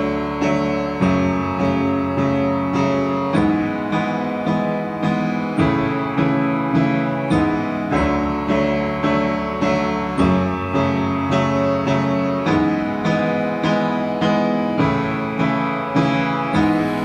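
Music: a piano playing a steady, evenly paced pattern of notes, the instrumental opening of a song before the singing comes in.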